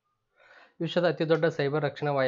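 A voice narrating in Kannada, starting just under a second in after a short breath.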